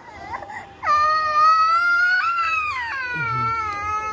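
Toddler crying: quiet whimpers, then about a second in a long, loud, high-pitched wail that lifts in pitch midway and fades out near the end. He is crying for fear that his sausage will be asked for.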